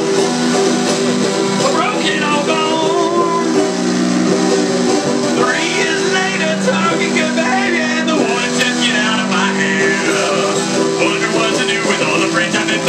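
A banjo being played live in a song, the music running steadily without a break.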